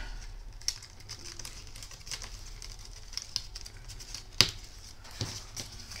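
Red cardstock bow pieces being folded and worked by hand: faint rustling with small scattered clicks and taps, and one sharper click about four and a half seconds in.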